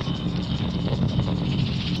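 Low, dense background music from a 1980s horror film's soundtrack, running steadily.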